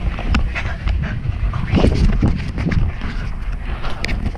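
A person panting hard while moving fast, over a steady rumble and short knocks from a handheld action camera in motion.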